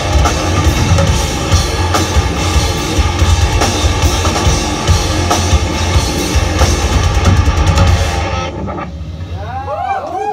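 Heavy metal band playing live through a club PA, with pounding drums, bass and distorted guitars. The song stops about a second and a half before the end, leaving a few rising-and-falling pitched sweeps.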